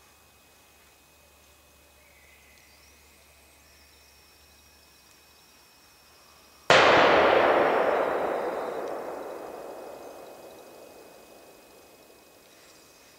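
A single gunshot about seven seconds in, sudden and loud, its echo rolling away through the forest and dying out slowly over about five seconds.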